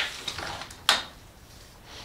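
Tape measure blade being drawn out along an aluminium track-saw track, with one sharp click a little under a second in.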